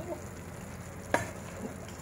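Minced meat, carrot and shredded cucumber sizzling in a frying pan while being stirred with a wooden spatula, with one sharp knock about a second in.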